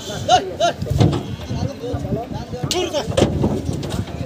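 Men shouting short calls to drive a cow off a wooden boat, with a few heavy knocks of hooves on the boat's boards as it jumps down onto the bank.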